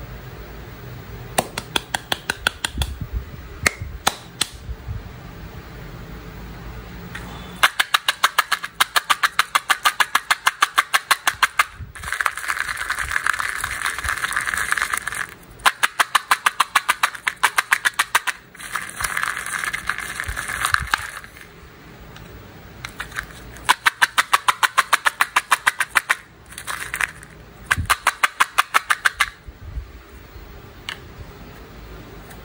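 Candy-coated chocolates rattling against the walls of a small plastic cup as it is shaken, in fast runs of even clicks broken by stretches of continuous rattling.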